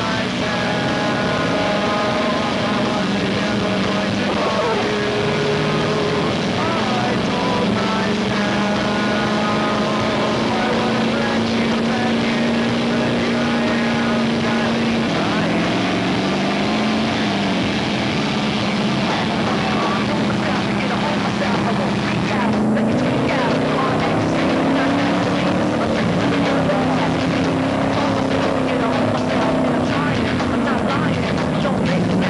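Pickup truck engine running under load as it tows a mattress rider through shallow water, its pitch holding steady for several seconds at a time, stepping between speeds, then rising and falling in long swells near the end.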